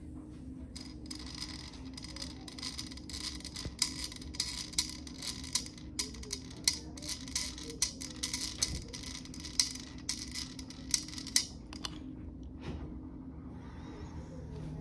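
Long breath drawn through a Voldyne 4000 incentive spirometer: an airy hiss with rapid, irregular clicks and flutter as the piston rises. It lasts about ten seconds and stops shortly before the end, over a steady low hum.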